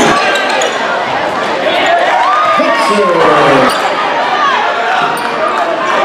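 Basketball game in a gymnasium: the ball being dribbled on the hardwood court and sneakers squeaking, mixed with players' and spectators' voices echoing in the hall.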